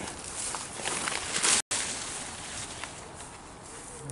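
Footsteps and rustling of garden foliage as someone walks through the plants, with scattered light crunches. There is a louder rustle about a second and a half in, then the sound cuts out for an instant and settles to a quieter hiss.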